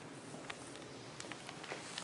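Faint, irregular footstep taps on a tile floor over a steady room hiss.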